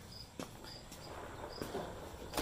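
A cricket chirping faintly, short high chirps about twice a second, with a single light click about half a second in.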